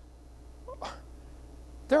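A pause between spoken phrases, filled by a steady low hum. A little under a second in comes one brief, faint human vocal sound that rises in pitch, and speech resumes near the end.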